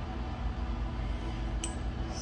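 Steady low background hum, with one short light click about one and a half seconds in.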